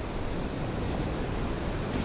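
Steady outdoor rushing noise of wind on the microphone and surf on a rocky shore.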